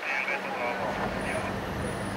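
A motor vehicle engine running with a low rumble that swells from about half a second in, with voices faintly mixed in.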